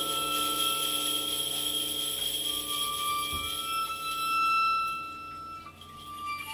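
Violin playing long, held high notes, one after another, over a steady metallic ringing from the percussion. The music swells about four seconds in, then drops away near the end.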